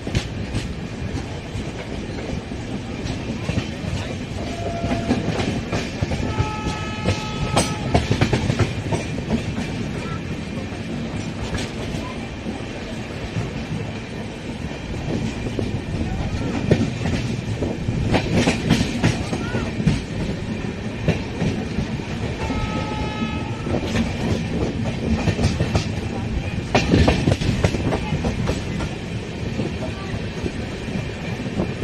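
Express train running, heard from an open coach doorway: a steady rumble with wheels clacking over rail joints and points. Two short horn blasts sound, about a quarter of the way in and again about three-quarters through.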